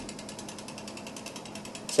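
Wooden woodpecker toy pecking its way down a metal wire pole: a rapid, even train of light clicks, about a dozen a second. Each beak strike on the wire frees the spring-linked sleeve to slip a little further before friction grips it again. The clicking stops just before the end.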